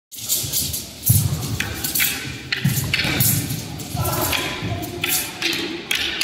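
A thin, flexible wushu straight sword (jian) rattling and swishing with each quick cut and flick, about a dozen sharp jangling strokes, mixed with dull thuds of feet stepping and stamping on the carpeted mat.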